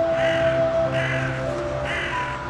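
A bird cawing three times, short harsh calls about a second apart, over background music with long held notes.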